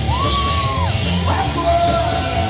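Live rock band playing loudly, drums and bass underneath. A high held note slides up into pitch, holds for most of a second and drops away, followed by a lower held note.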